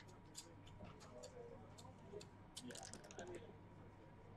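Faint clicks of backgammon checkers being set down on the board, then a quick rattling flurry of clicks from dice being rolled, about two and a half seconds in. Low murmur of voices and a steady hum sit underneath.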